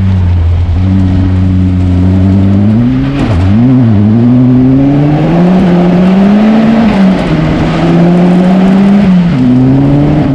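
Ariel Nomad 2 buggy's engine running hard, its pitch holding steady for the first few seconds, then climbing, dipping and settling again several times as the revs rise and fall.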